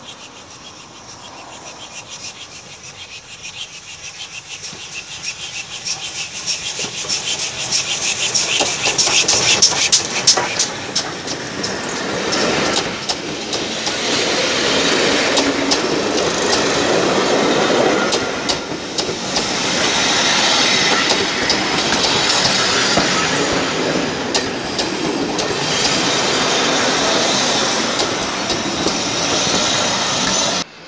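GWR Manor class 4-6-0 steam locomotive No. 7838 Odney Manor and its coaches running past at close range as the train comes into the station. The rumble rises as the engine approaches, with a flurry of sharp wheel clicks over the rail joints as it passes about ten seconds in. Then the coaches keep up a steady loud rumble and clatter.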